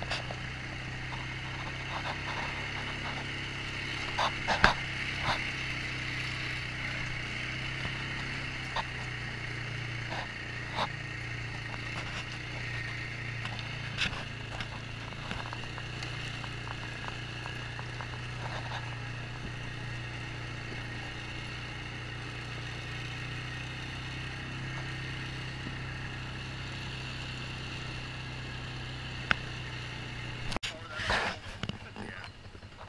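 ATV engine running steadily at cruising speed on a rough gravel trail, with scattered knocks and rattles from bumps, the sharpest about four and a half seconds in.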